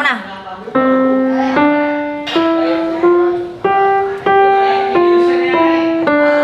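Grand piano played by a young child, one note at a time: a slow scale that climbs five steps and turns back down, each note struck cleanly and left to ring for about two thirds of a second.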